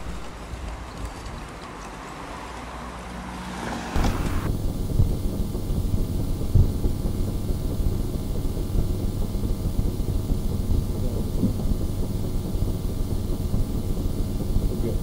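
Outdoor location sound: wind buffeting the microphone over a steady low mechanical rumble with occasional soft knocks. A rising swell in the first few seconds cuts off abruptly about four seconds in, where the rumble becomes louder.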